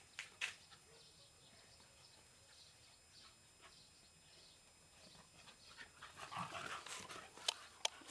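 Beagles panting and snuffling close by, faint at first. Short rustles and clicks grow louder toward the end.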